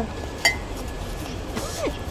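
A ceramic mug clinks once against the other mugs as it is set back into a cardboard box, with a short ring, about half a second in.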